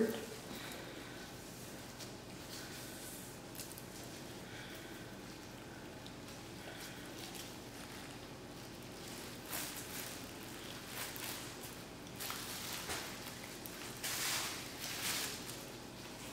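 Faint rustling and soft squishing of gloved hands trussing a raw whole chicken with string on a plastic sheet, with a few louder rustles in the second half.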